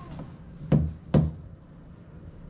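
Two sharp knocks, about half a second apart.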